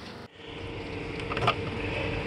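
Steady mechanical hum with a constant mid-pitched tone running through it, and a brief knock about one and a half seconds in.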